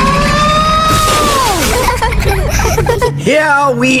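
A cartoon tour train of small carts rumbles along its rails under a long high sound that rises and then falls away about two seconds in. The rumble cuts off about three seconds in and a voice begins speaking.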